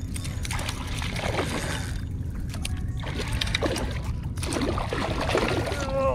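Water splashing and sloshing beside a kayak as a hooked redfish thrashes near the surface during the fight, over a steady low rumble.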